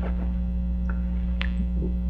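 Steady electrical mains hum, a low buzz with evenly spaced overtones, carried on the recording. There is a faint click about one and a half seconds in.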